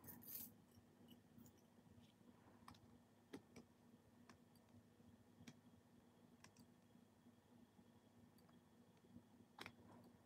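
Near silence with a few faint, scattered clicks of needle-nose pliers against metal-and-rhinestone jewelry pieces, as a glued-on piece is worked loose.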